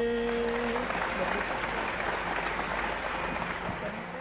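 Audience applause breaking out as the last held sung note of a bhajan dies away about a second in, the clapping then slowly fading.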